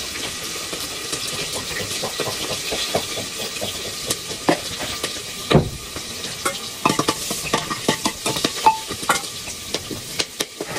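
Steady sizzle of oil heating in a pan on the stove, with sharp clicks and knocks of knife and hand work starting about halfway through, the loudest one just past the middle.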